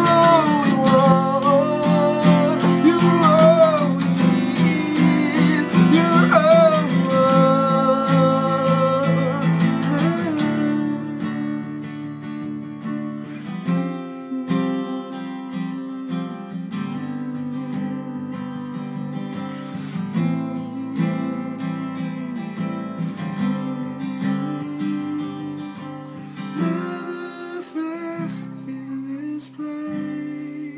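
Worship song on strummed acoustic guitar, with a voice singing the melody for about the first ten seconds; then the guitar carries on alone, softer, easing off near the end.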